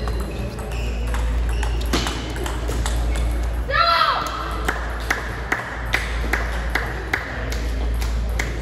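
Table tennis ball clicking off rubber paddles and the table in a rally, with a short shout from a player about four seconds in, then a string of single clicks about half a second apart after the rally ends. A steady low hum runs underneath.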